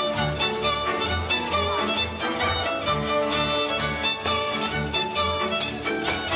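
Hungarian folk dance music for the Rábaközi dus, played by a small string band: fiddle melody over cimbalom and a second fiddle, with double bass keeping a steady, lively pulsing beat.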